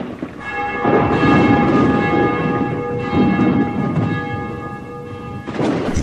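A sustained bell-like chime, several steady tones held together, that cuts off suddenly just before the end, with two low rumbling swells of noise beneath it.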